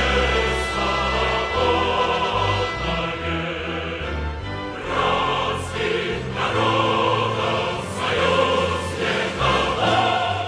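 Choral music: a choir singing held chords over a low bass line.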